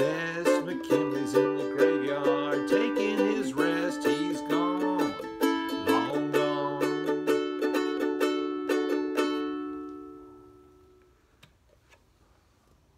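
Ohana soprano ukulele, a Martin replica, strummed with a man singing along. The voice stops about seven seconds in, the strumming stops about two seconds later, and the last chord rings out and fades away.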